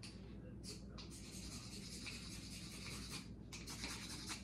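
A steel striker scraped along a ferrocerium (ferro) rod to throw sparks. There is one scrape about half a second in, then rubbing handling, then several quick short scrapes in the last second.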